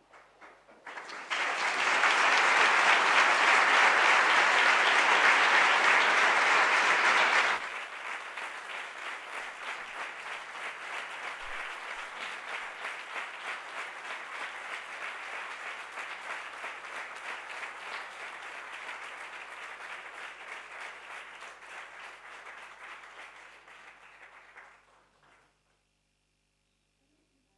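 Audience applauding as an award is presented. The applause starts loud about a second in, drops suddenly to a lower, steady clapping after about seven seconds, and dies away shortly before the end.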